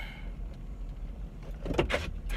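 Car engine idling, heard inside the cabin as a steady low rumble.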